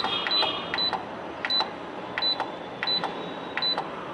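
Control-panel keys of a Canon imageRUNNER 2002N copier pressed repeatedly to scroll down its settings menu, each press giving a click and a short high beep, about seven in a row at an uneven pace.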